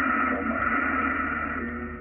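Icom IC-756 HF transceiver tuned to 7.120 MHz in the 40-metre band, its speaker giving a steady, narrow, muffled hiss of band noise and static with no clear station, easing slightly near the end.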